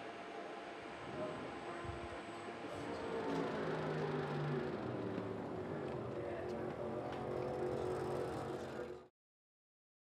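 Motorcycle and vehicle engines running in the background, a steady low hum with held tones that grows a little louder about three seconds in, then cuts off abruptly near the end.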